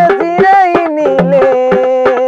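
Tamil gana song: a male voice sings a long, wavering note over quick, steady strokes on a dholak hand drum.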